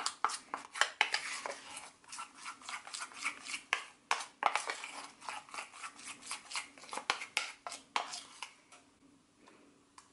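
Metal spoon stirring a thick paste in a small stainless-steel bowl, with quick repeated clinks and scrapes against the bowl's side. The stirring stops near the end.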